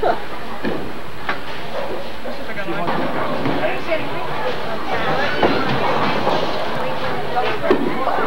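Busy bowling alley: a steady rumble under people talking and laughing, with a few sharp knocks, the clearest about halfway through and near the end.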